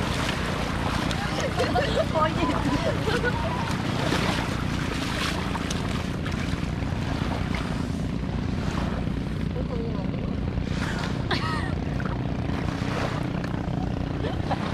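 A group of women laughing and shrieking as they splash through shallow sea water, with bursts of voices near the start and again about three-quarters of the way through. Under it runs a steady low hum.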